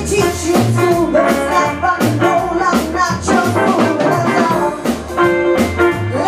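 Live rhythm-and-blues band playing: a woman singing over electric guitar, upright double bass, piano and drums keeping a steady beat.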